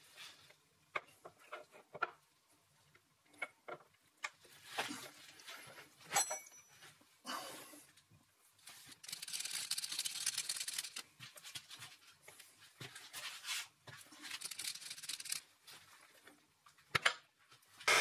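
Steel 4-jaw chuck being worked by hand onto a tight-fitting steel backplate register: scattered faint clicks and knocks with stretches of metal scraping and rubbing, the longest about nine and fourteen seconds in. The fit is snug and hard to align.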